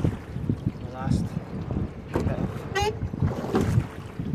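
Gusty wind noise on a microphone mounted on a single rowing scull under way, with water sounds from the hull and oars. A few snatches of speech come in about a second in and again near the middle.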